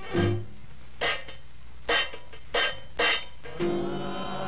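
Instrumental passage on a 1928 jazz band record: five separate chords, each standing alone with short gaps between them, in place of the running melody just before.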